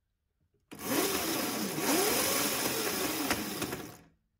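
Razor Pocket Mod electric scooter's motor and drive spinning the rear wheel on new batteries. It starts abruptly about a second in, whirs with a pitch that rises and falls as the throttle changes, and cuts off suddenly at the end. This shows the scooter runs again, so the old batteries were the fault.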